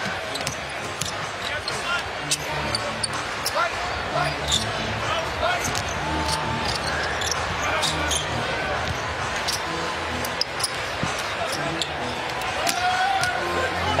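Basketball being dribbled on a hardwood arena court: repeated sharp bounces over a steady crowd murmur.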